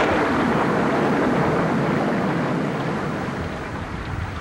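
Loud, steady rushing storm noise of wind and rain. It starts suddenly at the very beginning and eases slightly toward the end.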